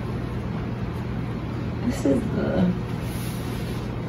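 Steady low hum of background room noise, with a woman speaking briefly about two seconds in.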